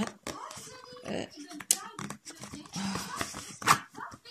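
Indistinct talking, mixed with rustling and light clicks as a woven straw pouch is handled.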